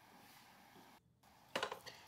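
Faint room tone, then near the end a brief cluster of knocks and clicks as batteries and their wiring are handled into a scooter's plastic under-seat battery compartment.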